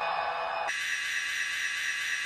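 Steady static hiss like white noise, starting suddenly and shifting higher about two-thirds of a second in, then holding level.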